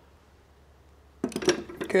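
Socket wrench on an RV water heater's drain plug, giving a quick run of sharp metallic clicks after about a second of near quiet, as the freshly snugged plug is finished off.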